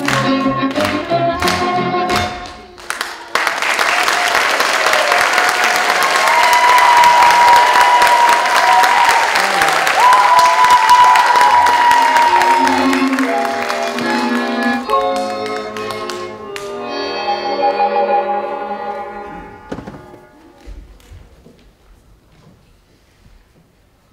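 Recorded Russian folk dance music: a rhythmic, beat-driven section breaks off about three seconds in. A long held note follows under loud audience applause, and after that a gentler tune plays and fades out near the end.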